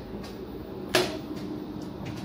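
A single sharp clack about a second in, from the door and gangway between two coaches of an electric multiple unit train, over the steady low hum of the train's interior.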